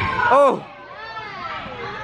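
A young child's loud, high-pitched squeal about half a second in, followed by softer child vocalizing.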